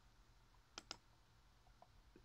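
Near silence broken by two quick clicks close together a little under a second in, from a computer mouse.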